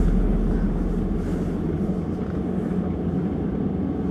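Steady low engine and road noise heard inside a car's cabin as the taxi rolls through a yard.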